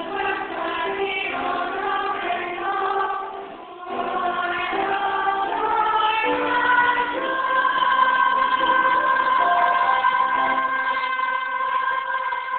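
A small mixed choir singing in parts, with a short break for breath about four seconds in and a long held chord through the last few seconds, heard through a mobile phone's microphone.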